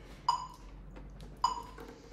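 Metronome beeping twice, short high beeps a little over a second apart, ticking at 52 beats per minute.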